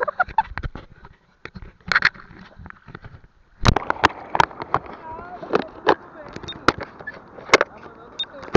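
Sharp knocks from hands on a waterproof action camera's case. From about three and a half seconds in, sea water splashes and slaps against the camera at the surface, with loud irregular clicks over a steady wash.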